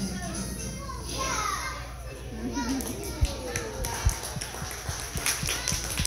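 Young children's voices and chatter, with music faint underneath. Two sharp thumps come about three and four seconds in, and a run of short, sharp taps follows near the end.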